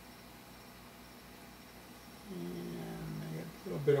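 Quiet room tone, then a man's drawn-out, level-pitched "uhhh" hesitation sound a little past halfway, running into speech at the end.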